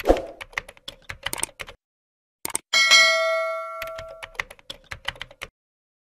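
Animated end-screen sound effects: a quick run of keyboard-typing clicks as text types out, then a single bell ding a little under three seconds in that rings on for over a second, followed by more typing clicks.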